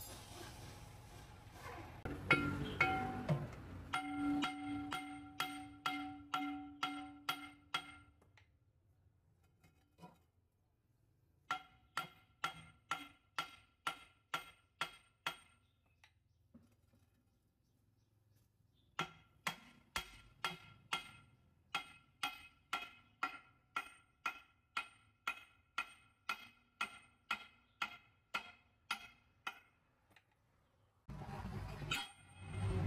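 Hammer blows on ringing steel, about two a second, in three runs separated by pauses of a few seconds. Each blow rings with the same metallic tone. A louder clatter comes a couple of seconds in.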